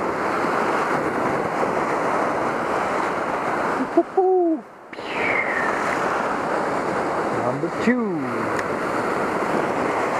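Ocean surf breaking and washing over shoreline rocks, a steady rushing. The sound cuts out briefly for about half a second just after four seconds in, and two short pitched, gliding vocal-like sounds come near four and eight seconds.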